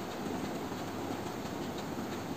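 Steady low background rumble, with faint rustles of stiff folded paper pieces being handled.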